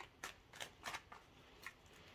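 Tarot cards being shuffled by hand to draw a card: faint, separate papery card flicks and swishes, about six in all, stopping near the end.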